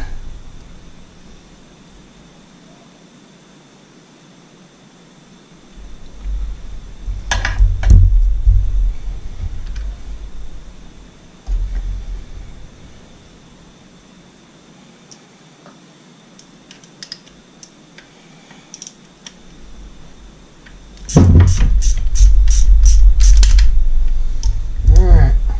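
Hand ratchet wrench clicking on the bolts of an outboard power head's stator plate, with low knocks and handling bumps of metal parts on the block; a quick run of clicks, about three a second, comes near the end.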